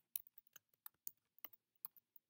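Faint computer keyboard keystrokes as a short line of text is typed: about a dozen quick separate clicks at an uneven pace.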